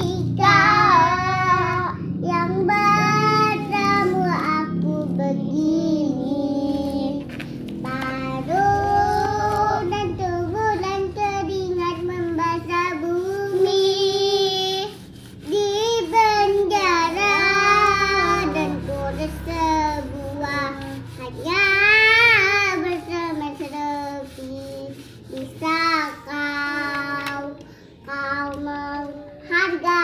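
A child singing a melody, with long held notes that slide up and down between short breaths.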